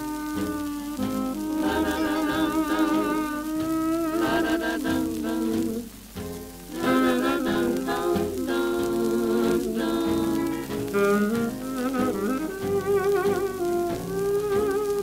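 Instrumental passage of a 1942 Danish swing recording: a lead melody line with vibrato over piano, guitar, bass and drums, briefly thinning out about six seconds in, with the light crackle and hiss of a shellac 78 record's surface.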